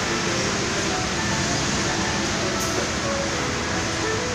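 Steady running noise of a coach standing at a bus bay, its engine and air conditioning humming without a break, with faint music in the background.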